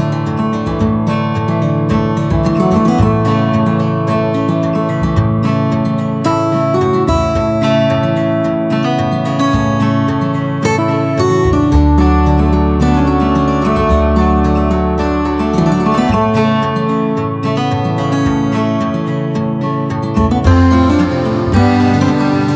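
Background music led by a strummed acoustic guitar.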